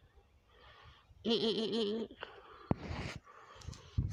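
A goat bleating once, a quavering call a little under a second long, about a second in. A sharp click follows a little later.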